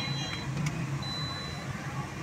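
Steady low hum of a car with a faint high-pitched electronic beep that sounds for about half a second, about once a second, like a car warning chime. A couple of light clicks come in the first second.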